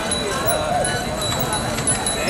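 Many people chattering while riding bicycles together in a large group, with scattered clicks and rattles from the bikes.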